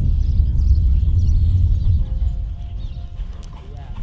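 A horse trotting on the sand footing of an outdoor arena, under a heavy low rumble that eases about halfway through.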